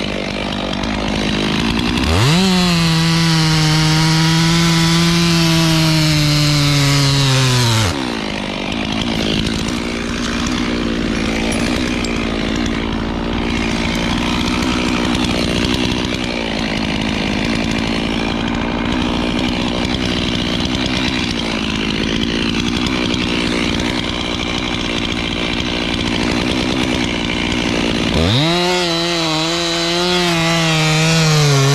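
Gas chainsaw cutting into an oak trunk. It idles briefly, revs up to a high steady pitch about two seconds in, then drops in pitch under load as the chain bites into the wood. It cuts steadily for about twenty seconds and revs up again near the end as it comes free of the cut.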